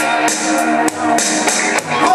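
Karaoke backing track playing an instrumental passage between sung lines, with drums and guitar on a steady beat.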